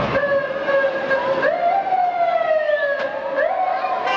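A siren wailing: one steady tone that jumps up in pitch twice and slides slowly back down in between.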